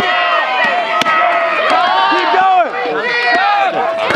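Axe blows chopping into a squared yellow-poplar log, about one a second, under several spectators shouting encouragement.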